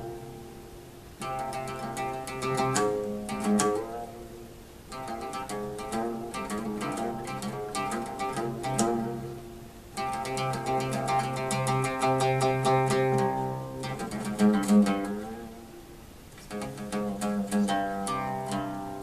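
Solo oud, a fretless short-necked lute, plucked in an improvised Azerbaijani mugham passage. Runs of plucked notes over a low sustained note come in phrases, each ringing away before the next begins, with the loudest plucks about 3.5 and 14.5 seconds in.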